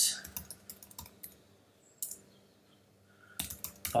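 Computer keyboard typing: a quick run of keystrokes for about a second, then a single keystroke about two seconds in.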